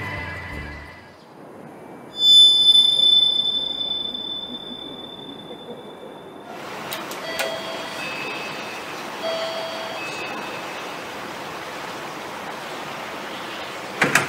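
A single bright chime rings out and fades away over about four seconds. Then, over a steady hiss, an apartment intercom doorbell gives its two-note chime twice in a row.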